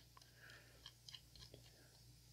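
Near silence, broken by a few faint ticks from a small precision screwdriver turning a screw in a titanium knife handle while the folding knife is being put back together.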